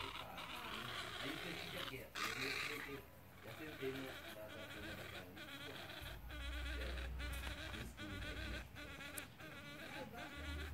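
Insects buzzing steadily in a dense chorus, with brief regular dips. A low rumble comes in about six seconds in and fades after a second or so.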